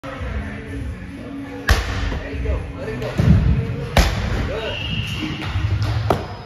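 Two hard medicine-ball throws, each landing with a sharp smack, the first a little under two seconds in and the second about two seconds later.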